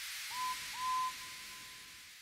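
Train whistle sound effect: two toots, a short one and then a longer one that trails off, over a steady hiss that fades away.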